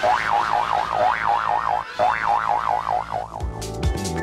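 A warbling synthesised comedy sound effect whose pitch swoops up and wobbles down over a steady low drone, repeating about once a second. Near the end it gives way to electronic theme music with a thumping beat as the sitcom's title bumper starts.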